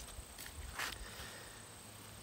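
Quiet outdoor field ambience: two faint brief rustles of corn husks being handled near the start, over a steady high-pitched insect drone.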